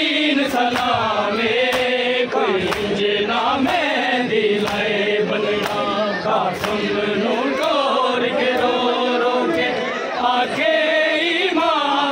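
Male voices chanting a noha, a Shia mourning lament, in a slow, melismatic line. It runs over steady rhythmic matam, the slap of hands beating bare chests about twice a second.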